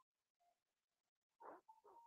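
Near silence in a call's audio, with a few faint, brief tones and one faint voice-like trace near the end.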